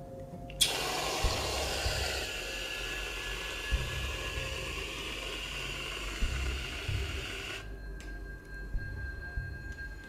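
An aerosol can of spray whipped cream hissing as the cream is sprayed out in one long squirt. The hiss starts suddenly about half a second in and cuts off about seven and a half seconds in.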